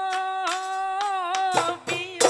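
A woman singing a Bihu song, holding one long note for about a second and a half, then dhol drum strokes come in near the end.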